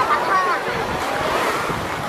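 Small waves washing in the shallows of a busy sea beach, under the scattered voices and calls of many bathers, with wind on the microphone.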